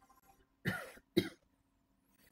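A person coughs twice in quick succession, the first cough a little longer than the second.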